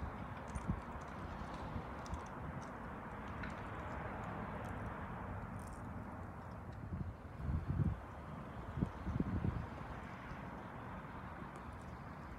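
Steady low background hum of an outdoor night scene, with two short clusters of low thumps about seven and a half and nine seconds in.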